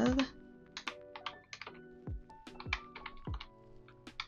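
Buttons of a plastic desk calculator being pressed: about a dozen sharp clicks in quick, irregular runs as a figure is keyed in, over soft background music.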